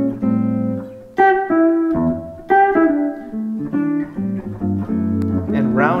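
Electric guitar, an early-1990s PRS Custom 24 on its neck humbucker, played clean with a little reverb through a Line 6 Relay G10 wireless: a phrase of picked chords and single notes, each struck and let ring. A short spoken word comes in at the very end.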